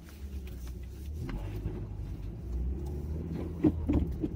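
Car engine and road rumble heard from inside the car's cabin, a steady low drone that grows louder about a second in.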